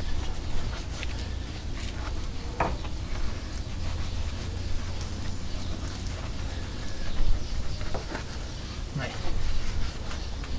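An old bristle wash brush scrubbing soapy grime off a truck's chassis rails and bolts: an uneven scratchy rustle with a few faint knocks, over a steady low rumble.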